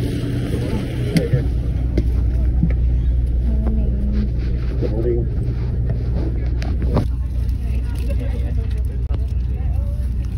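Coach bus engine running with a steady low hum, heard from on board, with a few knocks from footsteps and handling about one, two and seven seconds in.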